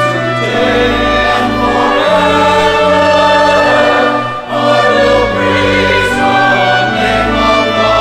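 Choir singing a hymn in parts, with instrumental accompaniment underneath. There is a brief break between phrases about four and a half seconds in.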